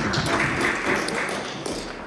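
Members thumping their desks in applause: a dense patter of many taps that fades away.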